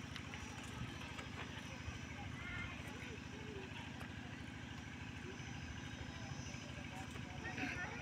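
A steady low engine-like drone with a fast, even pulse. A few faint high chirps come about two and a half seconds in and again near the end.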